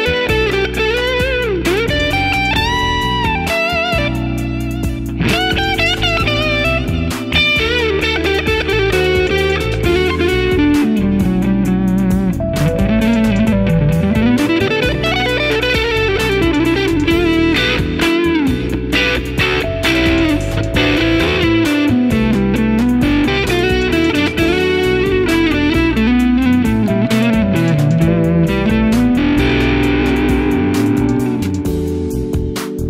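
Electric guitar from a Fender American Standard Stratocaster, played through Benson effect pedals into a Fender '65 Twin Reverb amp. It plays a melodic lead line full of string bends and vibrato over steady lower notes.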